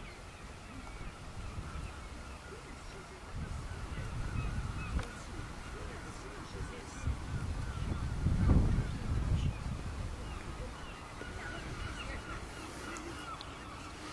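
Eurasian oystercatchers calling below: a continual run of short, high piping calls from several birds, over a low rumble that is loudest about eight and a half seconds in.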